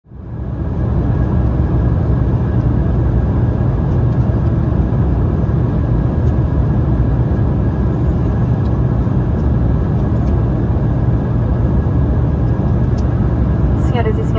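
Steady cabin noise of an Embraer 195 airliner in flight, heard from a window seat beside the engine: a loud, even low drone of the turbofan engines and airflow. It fades in over the first second.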